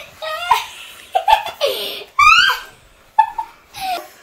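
Children laughing in several short bursts, one rising to a high squeal about two seconds in.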